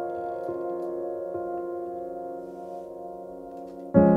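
Soft, slow piano music: sustained notes and chords ringing and slowly fading, with a few quiet new notes in the first second or so. A louder chord strikes right at the end.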